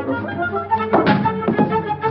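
Orchestral film-score music, a woodwind-led melody, with two heavy struck accents about half a second apart, starting about a second in.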